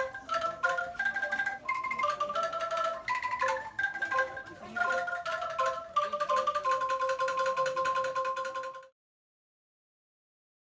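Angklung, tuned bamboo tubes rattled in their frames, playing a short melody of single notes. It ends on one long held note that cuts off suddenly about nine seconds in.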